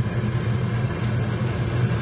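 A steady low hum over a rumbling background noise, like a motor or fan running.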